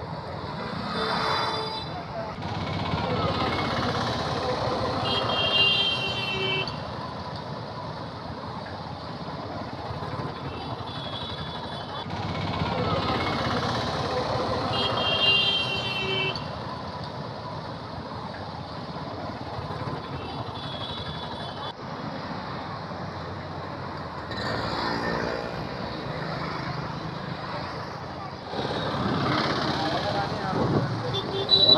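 Busy street traffic of motorcycles and auto-rickshaws passing, with short horn toots recurring every few seconds.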